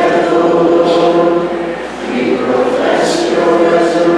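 Choir singing a slow Maronite liturgical chant on long held notes, with a short break for breath about two seconds in. It is the sung response that follows the words of institution.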